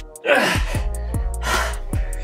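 Two heavy, breathy exhalations from a man working hard through a floor exercise, over background music with a steady beat of about two and a half thumps a second.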